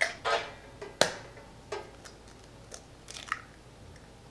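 A raw egg being cracked: sharp taps of the shell against a hard edge, the loudest about a second in, then the crackle of the shell being pulled apart as the egg drops into a plastic mixing bowl.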